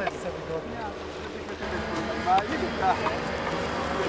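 An engine running steadily, a low even hum, with brief voices over it.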